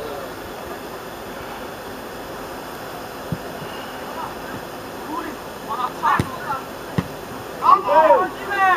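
Steady rushing background noise with three sharp knocks of a football being kicked in the second half, and players shouting in the distance near the end.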